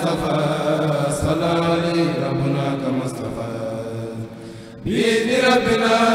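A group of male voices chanting an Arabic xassida (Mouride religious poem) in unison through microphones. The chant drops away for a moment about four seconds in, then the voices come back in together on the next line.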